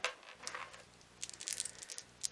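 Small plastic dice being scooped out of a plastic tub and rattled in the hand: a few faint clicks, then a quick cluster of clicking and rattling near the end.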